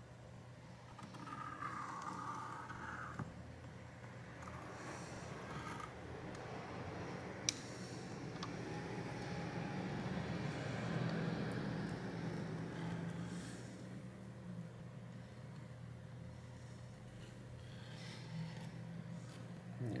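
Faint rustling and scraping of hands working a tablet screen in its plastic film while a tube of glue is run along the frame. There is one sharp click about seven and a half seconds in, and a low steady hum underneath.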